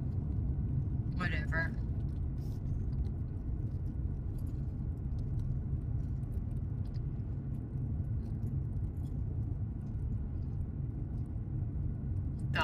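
Steady low rumble of a car driving along a paved road, tyre and engine noise heard from inside the cabin.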